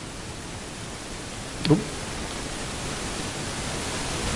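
Steady hiss of room noise that grows slightly louder, with one brief voice sound about halfway through.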